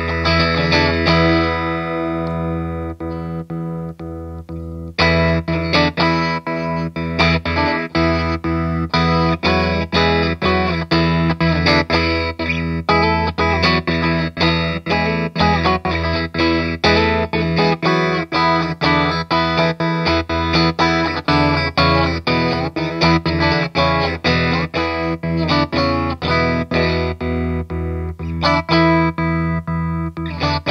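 Electric guitar played through an Idiot Box Mad Doctor Stutter pedal into a Dr. Z M12 combo amp, the pedal's choppy tremolo stutter cutting the sound on and off in an even, rapid rhythm. A chord rings and fades over the first few seconds, chopped as it decays, then a fresh strum about five seconds in starts steady stuttered playing.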